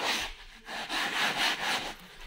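Hand-held scrub brush rubbed back and forth over fabric sofa upholstery, a scratchy brushing in several repeated strokes.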